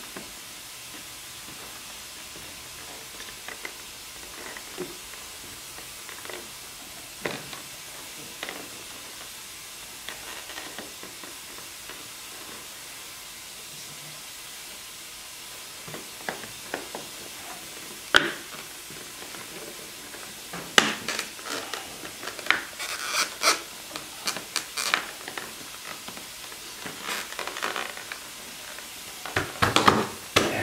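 Plastic trim pieces being pressed and clipped into a plastic front bumper cover by hand: scattered clicks, snaps and scrapes of plastic on plastic, sparse at first and more frequent in the second half, over a steady background hiss.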